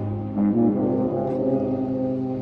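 High school marching band's brass section playing held chords, which grow louder about half a second in as a new, fuller chord enters with moving lower parts.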